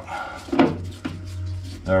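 Screwdriver working screws out of the window winder mechanism inside a classic Mini steel door, with a few short metallic clicks and scrapes over a steady low hum.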